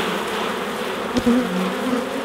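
Honey bees buzzing in a dense cloud as they are shaken off a frame of capped brood over an open hive, the buzz wavering in pitch. A single knock about a second in.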